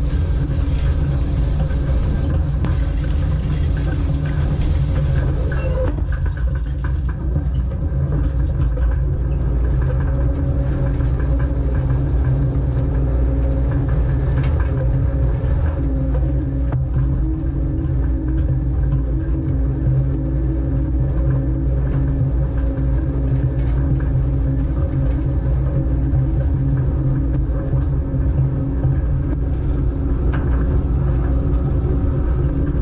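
Tractor engine running steadily under load while towing a 20-wheel V-rake through cut hay, a constant low drone, with a hiss added during the first few seconds.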